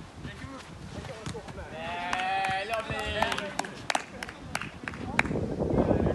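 Players' raised voices calling out across an outdoor handball game, loudest between about two and three and a half seconds in, followed by a few sharp knocks of ball play.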